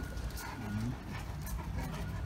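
Great Danes' claws clicking on a concrete floor as they walk, with a faint steady high tone that comes and goes.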